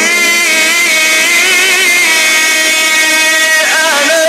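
A male Qur'an reciter chanting in the melodic mujawwad style, amplified through microphones: one long sustained note with wavering ornaments in the pitch, breaking briefly near the end before the next phrase begins.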